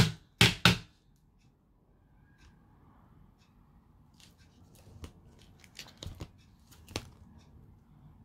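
Loose phone parts, a metal mid-frame and its cracked glass screen panel, knocked together three times in quick succession, then quieter handling with a few light clicks and taps.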